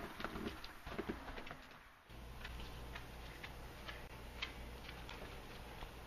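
Faint outdoor ambience that changes abruptly about two seconds in: scattered short high ticks or chirps, then the same kind of ticks continuing over a low steady hum.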